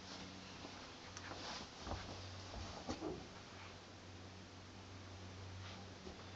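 Faint, steady low electrical hum from a vacuum cleaner motor fed through a variac at low voltage, with a few faint clicks.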